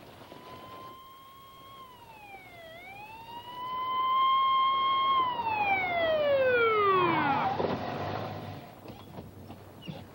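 Police car siren wailing: a steady tone with one brief dip, then a rise that is held and grows louder as the car nears. It then winds down in a long falling glide and stops about seven and a half seconds in, followed by a low rumble as the car pulls up.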